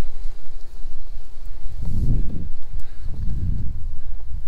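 Wind rumbling on a handheld phone's microphone, with two stronger low swells about two and three and a half seconds in, mixed with the soft steps of someone walking over snow.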